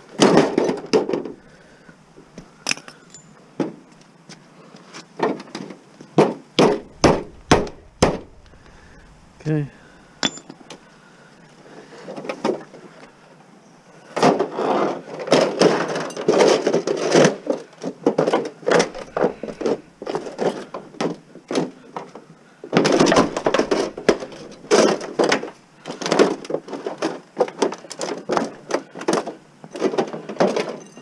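Aluminum extrusions being handled and broken down, clattering and knocking against each other and the pavement. A few separate sharp clicks come early, then two long runs of rapid knocking and clatter.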